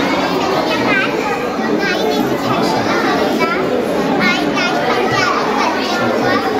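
Many children's voices chattering and calling at once, a steady, unbroken babble of overlapping talk.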